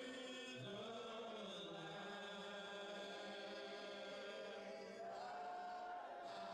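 A hymn sung a cappella by male song leaders and congregation, with no instruments. The voices hold long notes that shift pitch every second or two.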